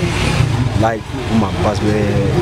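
A man's voice speaking into a handheld microphone over a steady low engine hum from street traffic.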